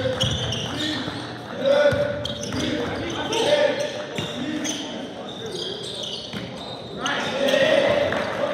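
Basketball game sounds in an echoing gym: the ball bouncing on the hardwood, sneakers squeaking in short bursts and players calling out.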